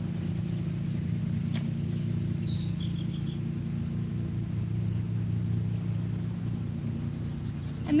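Lawn mower engine running steadily at a distance, a low, even drone, with a few short bird chirps about two seconds in.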